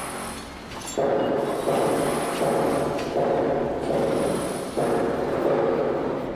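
Machinery-like ambient sound effect of a virtual factory: a pitched drone that restarts abruptly about every three-quarters of a second, beginning about a second in after a quieter hum.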